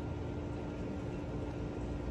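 Room tone: a steady hiss with an even, low hum and no other sound.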